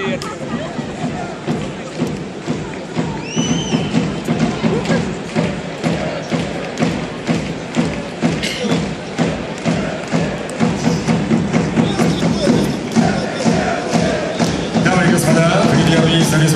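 Loud boxing-arena noise after a bout: sharp thuds repeating about twice a second, mixed with music and voices, and music with singing coming up louder near the end.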